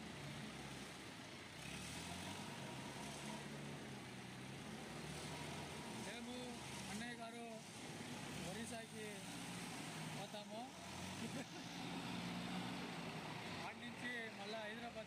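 Diesel engine of an Escorts Hydra 12 pick-and-carry crane running steadily as the crane moves, with people talking over it in the middle and near the end.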